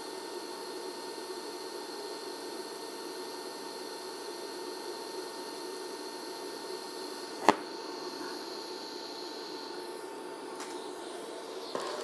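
Steady hiss of a scratch-started TIG arc from a small 110-volt inverter welder, fusing an eighth-inch overlapped plate joint at about 80 amps. A single sharp click comes about seven and a half seconds in, and the higher part of the hiss drops away about ten seconds in.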